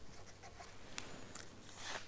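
Marker pen writing on paper: a few faint, short scratching strokes.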